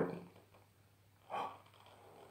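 Near quiet, then one short, sharp breath through the nose about one and a half seconds in.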